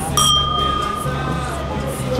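Two stemmed wine glasses clinked together in a toast: a single bright ring that fades away over about a second and a half.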